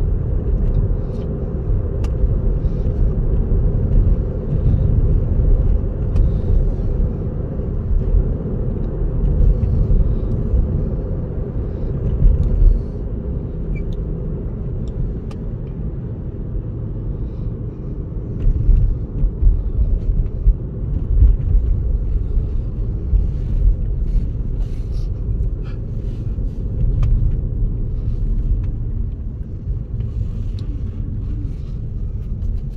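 Low tyre and road rumble inside the cabin of a Tesla electric car driving itself on city streets and slowing down, with a few faint clicks.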